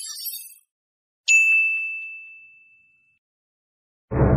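A single bright bell-like ding from a subscribe-animation sound effect, struck once about a second in and ringing away over a second and a half. A high shimmering sound fades out in the first half-second.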